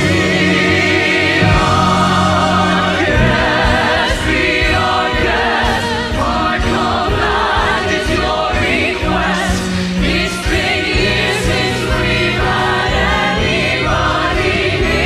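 Stage musical ensemble number: a chorus of many voices singing together over a full instrumental accompaniment, loud and continuous.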